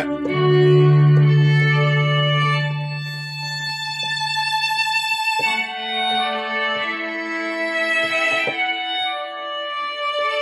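String-quartet preset of an iPad keyboard synth app playing sustained bowed-string chords. A low held note carries the first half, then the chord changes about halfway through.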